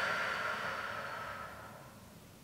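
A woman's long, soft out-breath during a cat-stretch spine curl, fading away over about a second and a half.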